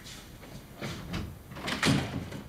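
A door being handled, with a few soft knocks and a louder knock just before the end.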